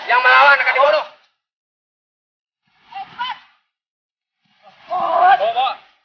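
People's voices in three short bursts of speech or calling, with dead silence between them.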